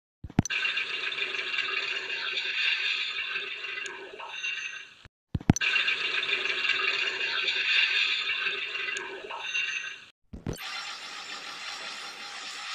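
Soundtrack of a Nickelodeon TV ident: a noisy, rattling sound effect that opens with a sharp click. The same five-second stretch plays twice in a row, then it cuts off and a different, quieter stretch follows.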